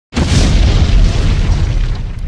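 Explosion sound effect for a fiery logo intro: a sudden loud boom right at the start that runs on as a deep rumble, with a rushing hiss that fades over the two seconds.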